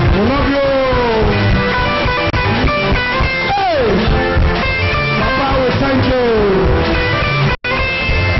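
A live church band playing: electric bass guitar and keyboard over a steady low drum beat, with melodic lines sliding up and down in pitch. The sound cuts out for an instant near the end.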